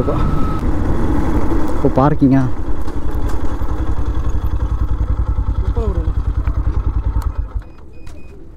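Yamaha FZ V3's single-cylinder engine running at low speed as the motorcycle slows to a stop. Its beat slows and becomes evenly spaced, then the engine stops near the end.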